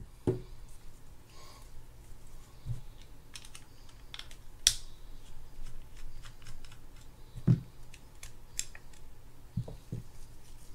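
Small metal parts of a Shimano Spirex 2500FG spinning reel's rotor and bale assembly clicking and tapping as they are unscrewed with a mini screwdriver and lifted off. The loudest is a sharp click about halfway in, with a few dull knocks.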